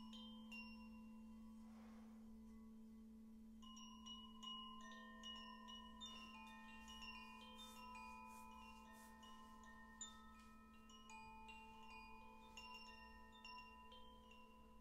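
A crystal singing bowl tuned to A3 sings a soft, steady hum under the scattered bright pings of a harmony chime, which start sparsely and become frequent from about four seconds in, each note ringing on and overlapping the next.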